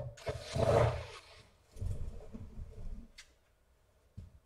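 Small cordless electric screwdriver running in two short bursts, driving the screws of a laptop's bottom cover, the first burst the louder, with a sharp click just after three seconds.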